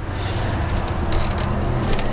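A steady low machine hum under an even rushing noise.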